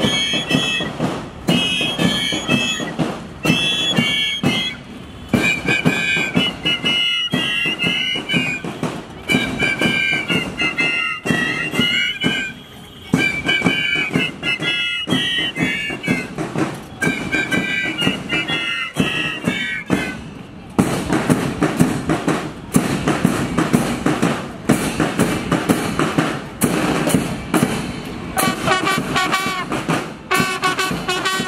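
A marching school band: high wind pipes playing a tune over steady drumming. The pipe tune stops about two-thirds of the way through while the drumming carries on.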